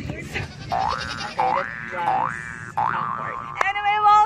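A cartoon "boing" sound effect repeated four times, each a springy pitch glide swooping sharply upward, followed near the end by a held, wavering pitched tone.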